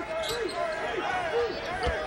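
Arena sound of live basketball play: a basketball bouncing on the hardwood court, one clear thud near the end, amid short calls from players or the crowd.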